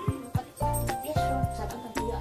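Background instrumental music: a light track with held notes over a steady, repeating bass line.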